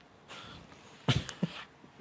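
A person's breath, then a brief laugh in two short, sharp bursts about half a second apart.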